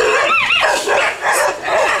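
Young Rottweilers barking in quick succession, about five loud barks, with a high yelping cry a third of a second in.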